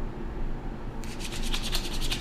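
Wet, sudsy hands rubbing briskly together with a spray-on cleanser, a rapid swishing of skin on skin that starts about halfway through.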